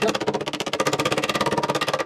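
Rapid, very even tapping of a lead dresser on lead sheet laid over a timber edge, as the lead is dressed into a bend. It runs at about fifteen strikes a second and starts and stops abruptly.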